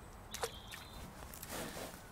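Quiet outdoor ambience with light rustling, and a short, quickly falling chirp about half a second in.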